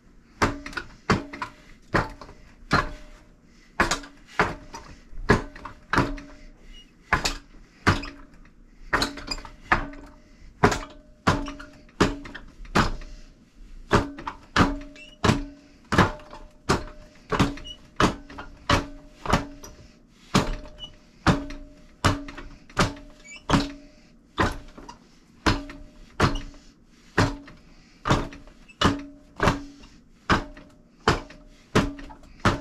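Forearms and hands striking the padded arms and post of a four-armed Wing Chun training dummy: a steady run of sharp knocks, nearly two a second, many followed by a short low ring from the dummy.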